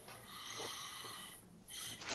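A faint, airy breath through a call microphone: a person draws in breath for about a second, followed by a shorter breath near the end.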